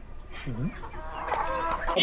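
Chicken clucking sounds: a few clucks about halfway through, then a quicker run of clucks that grows louder toward the end.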